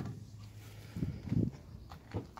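Two soft footsteps about a second in, then a fainter one near the end, as someone walks alongside a parked van.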